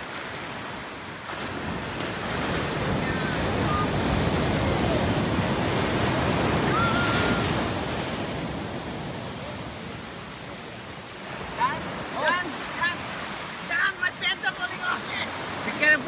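Ocean surf breaking and washing around the rocks: the rush of water swells over the first few seconds, holds, then eases. From about twelve seconds in, voices call out in short bursts over the surf.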